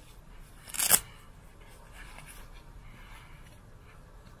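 The hook-and-loop strap on a child's protective pad is ripped open once about a second in: a short, loud rasping tear that cuts off sharply. Faint rustling of the pad being handled follows.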